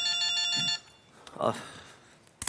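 Mobile phone ringtone: a fast-pulsing electronic ring that cuts off about a second in, when the call is picked up.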